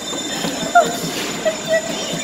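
Steady rattling rumble of an amusement ride, like coaster wheels running on track, with short bursts of laughter from the riders.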